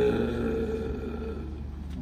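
A man's long, drawn-out hesitation vowel, a held Turkish 'eee' spoken into a handheld microphone, steady in pitch and slowly fading away.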